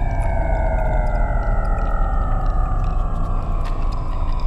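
Eurorack modular synthesizer playing slow, downward-gliding tones over a steady low drone, with scattered faint high ticks. The pitches are driven by a houseplant's biodata signals through an Instruo Scion module.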